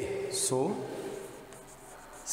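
Chalk scratching on a blackboard as a word is written, faint, in the second half, after a long drawn-out spoken "so".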